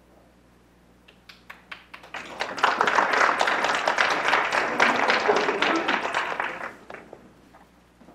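Audience applauding: a few scattered claps at first, building to full applause about two seconds in, then dying away with a last few claps near the end.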